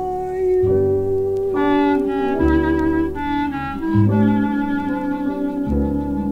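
Small jazz ensemble on a 1957 vinyl LP playing an instrumental passage with no singing: sustained chords and a long held note over slow bass notes that change about every couple of seconds.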